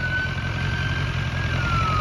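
BMW S1000XR's inline-four engine idling steadily. A faint thin high tone holds and then falls away near the end.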